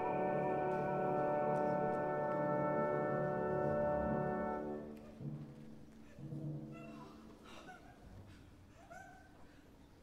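Opera orchestra holding a loud sustained chord for about five seconds, then dropping to quiet, low held notes that fade away.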